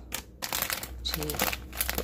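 Plastic bag of shoestring potato sticks crinkling and rustling in a hand as it is picked up and turned over, a quick run of crackles.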